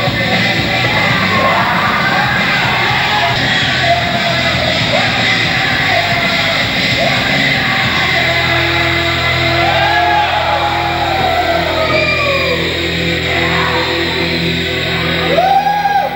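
Rock music with a loud sung and yelled vocal, dense and steady, with held low notes coming in about halfway through.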